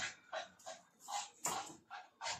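A fork beating egg in a ceramic bowl: short strokes of fork against bowl, about two to three a second.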